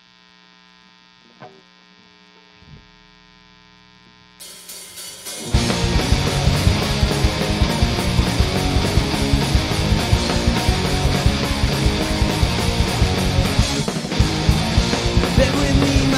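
A steady mains hum with one short spoken word, then about five seconds in a pop-punk band crashes in: electric guitars, bass and drums playing a fast, loud song with rapid drumming.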